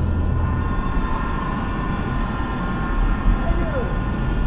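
Steady road and engine rumble inside a moving car, with the car radio playing faint, held tones over it.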